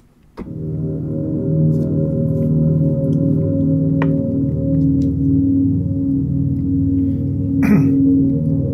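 Sustained synthesizer pad from the ORBIT Kontakt instrument, playing its vocal-derived 'Vowelle' sound. It starts about half a second in and holds one long chord-like tone that keeps shifting and morphing while the key is held.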